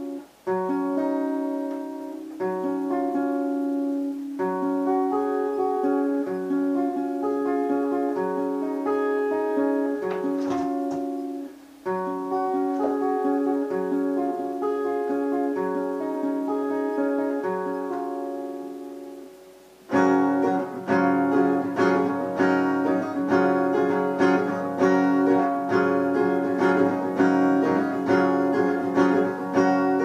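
Acoustic guitar fingerpicked in repeating arpeggio patterns as a finger warm-up, with short breaks about twelve and twenty seconds in. After the second break the playing turns fuller and louder, with many more notes struck together.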